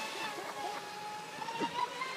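Electric RC speedboat's motor whining steadily at high speed across the water, its pitch rising slightly near the end.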